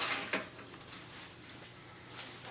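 Light handling noise as a round radiant surface element is lifted out of a glass-top electric range: a short click about a third of a second in, then only faint rustling.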